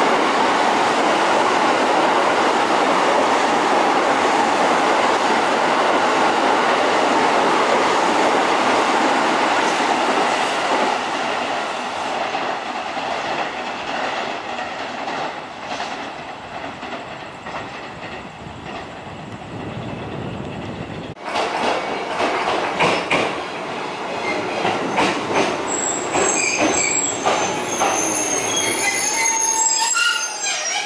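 E353 series limited express train running past the platform at close range: a loud, steady rush of wheels and air that fades over about ten seconds as it draws away. After a break about 21 seconds in, another train is heard at the platform, with clicking and high-pitched wheel or brake squeals near the end.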